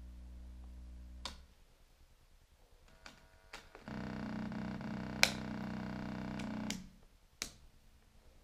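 Elektor Formant modular synthesizer oscillator tones switched on and off by patch-cable plugs: a steady low drone with overtones cuts off with a click about a second in. After a few small jack clicks, a louder steady tone with many overtones sounds for about three seconds, with a sharp click in the middle, and stops with another click.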